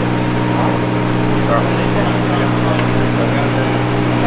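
Steady low mechanical hum of a few fixed tones, running evenly, with faint voices over it.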